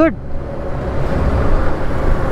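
Riding noise of a 2020 Honda Gold Wing, its 1.8-litre flat-six engine, with wind on the microphone: a low steady rumble, growing slightly louder about a second in.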